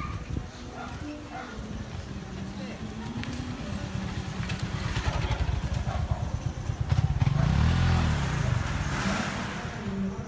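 A motorcycle passing close by on the street: its engine note and tyre noise build steadily, peak about eight seconds in with the pitch rising then dropping, and then fade.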